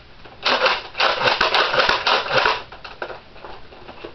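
Nerf Sonic Deploy CS-6 blaster's plastic mechanism clattering as it is transformed from its folded stealth mode into blaster mode: a dense run of rattling clicks lasting about two seconds, then a few lighter clicks.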